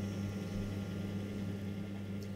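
Electric potter's wheel motor humming steadily as the wheel spins under a vase being thrown.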